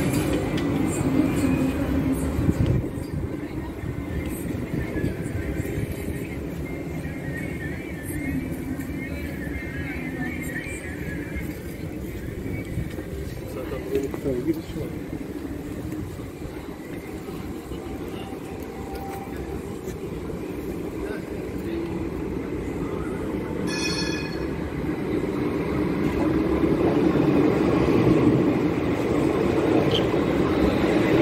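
Electric street trams running on their rails close by: one is loud at the start and fades after about three seconds, then comes quieter street ambience, and another tram's rumble builds and passes close alongside over the last few seconds. A short high-pitched tone sounds about three-quarters of the way through.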